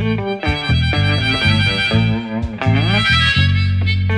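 Harmonica solo played cupped against a vocal microphone, a run of short notes with one note bent down and back up about two and a half seconds in, over electric and acoustic guitar accompaniment.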